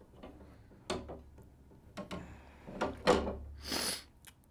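Shed antlers knocking on a wooden table and against each other as they are handled: a few hard knocks, the loudest about three seconds in, then a short scrape.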